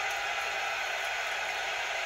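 Basketball arena crowd cheering in a steady, unbroken roar.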